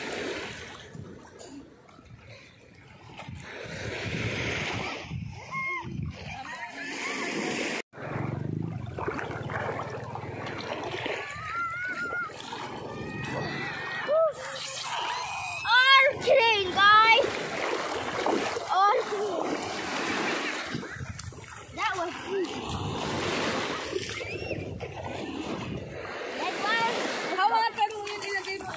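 Sea water splashing and sloshing in the shallows as a child wades and plays, with children's high voices calling out briefly in the middle and again near the end.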